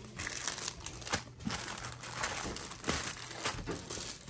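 Crinkling and rustling handling noise, irregular, with scattered light clicks.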